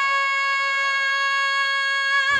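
A young woman's solo singing voice holding one long, high belted note. The note is steady at first and takes on vibrato near the end.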